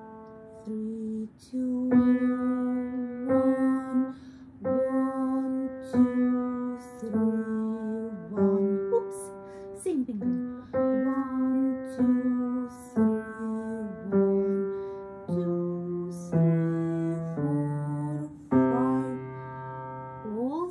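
Piano played slowly one note at a time by a young beginner, each single note struck and left to ring about a second before the next. The last few notes step down lower.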